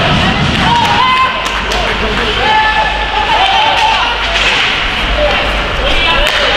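Voices shouting and calling across an ice hockey rink during play, with scattered short clacks of sticks and puck.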